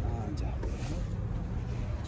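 A steady low rumble with faint speech over it, mostly in the first half-second.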